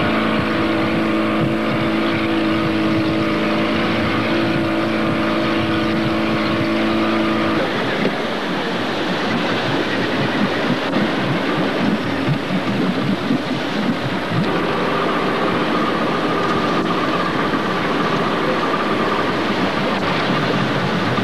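Motorboat engine running at a steady drone, heard from aboard with wind and water rushing past. About seven seconds in the even hum gives way to a rougher rushing noise, and a new steady tone joins about two-thirds of the way through.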